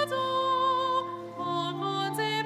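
A hymn sung at the entrance of a Catholic Mass, with voices holding long notes that change pitch slowly from one to the next.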